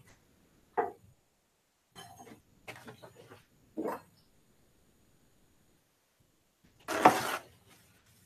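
Mostly quiet, with a few brief faint knocks and rustles of handling. Near the end comes a short, louder rustle of a paper towel being pulled and handled.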